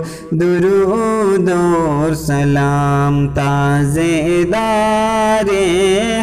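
A male voice singing a Salat-o-Salam, the Urdu devotional salutation to the Prophet, in a melismatic chant with long held notes over a steady low layer. There is a short break for breath at the very start.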